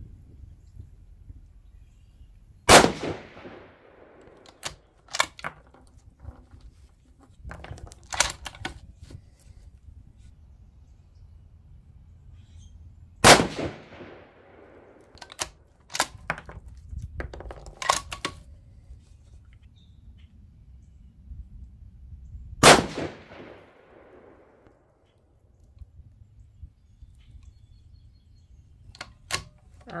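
Three rifle shots from a Savage 110 bolt-action in 6mm ARC, roughly ten seconds apart, each followed by a fading echo. Between the shots come sharper metallic clicks of the bolt being cycled.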